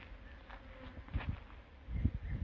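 A flying insect buzzing, with a few light clicks about a second in.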